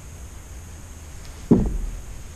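A single dull thump about one and a half seconds in, over a faint low steady hum.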